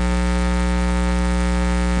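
Steady electrical mains hum with many overtones, a loud, even buzz that does not change.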